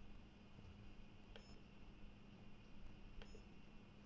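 Near silence: a faint steady low hum with two faint short clicks, each carrying a brief high beep-like tone, about two seconds apart.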